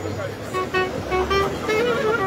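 A reedy wind instrument plays a melody of short held notes over the voices of a crowd.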